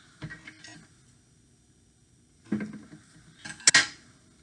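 Adhesive tape pulled off its roll and torn: a short, sharp ripping near the end, after a few small handling clicks at the start.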